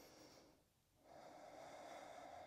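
Near silence with faint breathing from a woman holding a yoga pose: one soft breath fading out about half a second in, and another starting about a second in.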